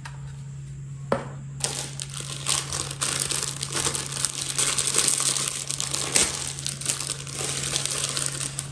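Plastic bag crinkling as it is handled, a continuous crackle that starts about a second and a half in, after a single light knock.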